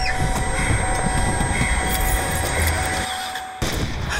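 Film trailer soundtrack: a deep rumble under a few long held music tones, dipping just after three seconds, then a sudden hit about three and a half seconds in.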